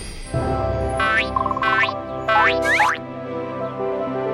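Cartoon background music with springy, boing-like sound effects: four quick upward-sweeping pitches in the first three seconds, with a short warble between the first two.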